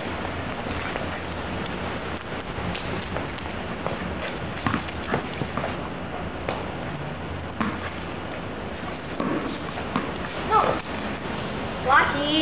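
Scattered light taps and scuffs of footsteps and a dog's paws on stone paving, over a steady tape hiss, with a short voice-like sound about ten and a half seconds in.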